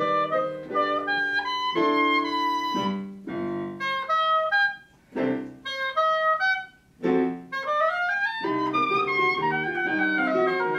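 Oboe solo with piano accompaniment. In the middle the music breaks into short phrases with two brief pauses, the oboe playing a quick rising run, and the fuller sound with piano returns near the end.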